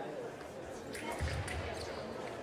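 Fencers' shoes thumping on the piste during quick footwork, a short cluster of heavy steps about halfway through with a few light clicks.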